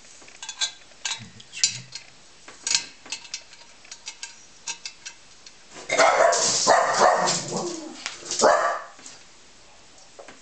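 Small brass blowtorch parts clicking and tapping against each other as they are handled and fitted back together. In the second half comes a louder, rough burst of sound lasting about three seconds, whose source is not clear.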